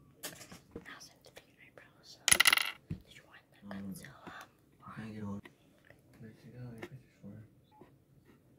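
A small hard object dropping or clattering about two seconds in: a sharp metallic clink that rings for half a second, with soft handling sounds and quiet whispering around it.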